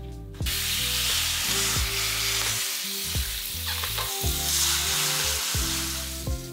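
Shower spraying water: a steady hiss that starts abruptly about half a second in and runs on under soft background music.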